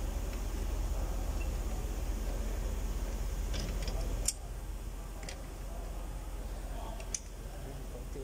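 A few light metallic clicks from a tool working the piston of a rear brake caliper with built-in handbrake, winding it back in. The sharpest click comes about four seconds in, over a steady low hum.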